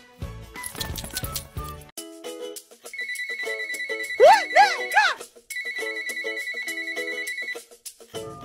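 Electronic phone ringtone trilling in two bursts with a short break between them, and a brief exclaimed voice over the first burst.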